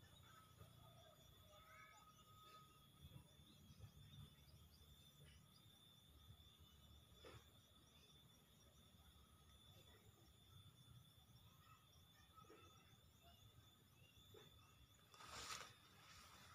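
Near silence: faint outdoor ambience with a faint steady high tone. A brief rush of noise comes near the end.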